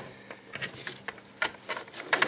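A few light clicks and knocks from handling a Nikon D5100 DSLR body while a battery is fitted into its battery compartment. The sharpest click comes about one and a half seconds in.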